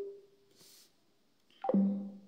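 A man's voice calling "hello?" with a long, held vowel: one call trails off in the first half second, and another drawn-out call starts about a second and a half in.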